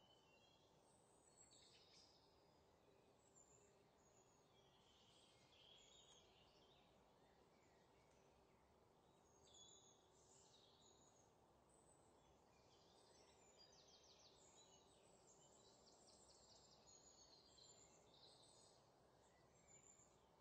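Near silence: a faint steady hiss with scattered small, high bird-like chirps all through.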